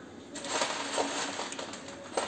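Socket ratchet clicking rapidly as it turns a nut on a Moto Guzzi V7 III's exhaust header, starting about half a second in.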